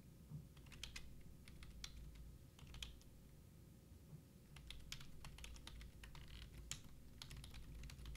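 Faint typing on a computer keyboard: irregular key clicks in two spells, with a pause of a second or so in the middle.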